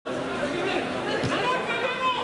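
Several voices talking and calling out over one another, indistinct chatter with no single clear speaker.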